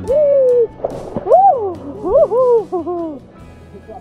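A woman's voice giving four long 'ooh'-like cries, each rising and falling in pitch, with a short rush of noise about a second in.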